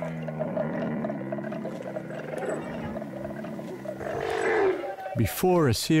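Dromedary camel's long, low bellow lasting about four seconds, pulsing slightly as it goes.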